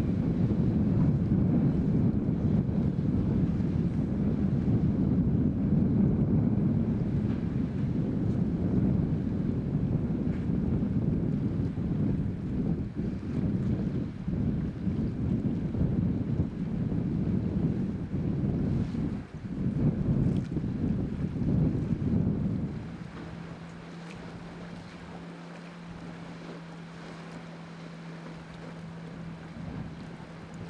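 Gusty wind buffeting the microphone, loud and uneven, that cuts off suddenly about 23 seconds in. After it, a boat engine's steady low hum is left under a quieter background.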